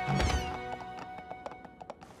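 Cartoon soundtrack: a held music note with a quick falling sparkle glide, then a run of light hoof clip-clops on a hard floor that grow fainter as the ponies walk into the throne room.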